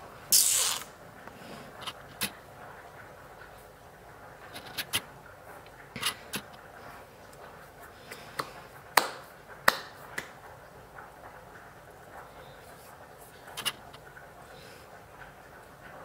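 Quiet room with small handling noises: a short rustle just after the start, then scattered light clicks and knocks every second or two.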